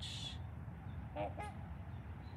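Two short calls from waterfowl on the lake, one right after the other about a second in.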